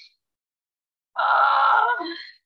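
A woman's strained groan of effort, lasting about a second and starting about a second in, while she holds a heavy dumbbell in a lying pullover.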